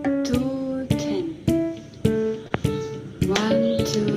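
A young woman singing a song to an instrumental accompaniment, with sharp plucked strokes keeping a steady beat about twice a second.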